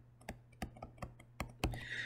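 Stylus tapping on a tablet screen while handwriting a short word: a series of faint, sharp clicks at uneven intervals.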